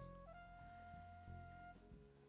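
Near silence: the faint low steady hum of a running Sharp inverter microwave oven. Under it, a few faint held musical notes that change pitch early on and stop near the end.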